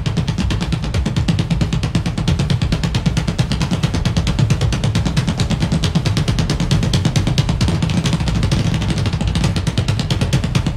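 Two drum kits played together: a fast, even stream of drum strokes with bass drum and cymbals, kept up without a break.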